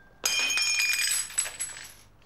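A sudden clatter about a quarter second in as glass jars and bottles knock together and food tumbles out of an open refrigerator onto the tiled floor. Several high glassy rings carry on for over a second and die away near the end.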